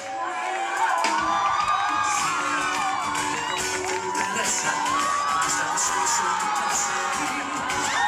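Live pop band music at an outdoor concert with a large crowd of fans cheering and shouting high-pitched whoops over it.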